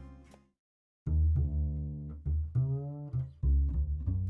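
A solo plucked bass line, the rendered bass track from a Band-in-a-Box song, played back on its own, starting about a second in after a brief silence.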